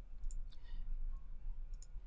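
A few faint, short clicks spread through a quiet pause, over a steady low hum.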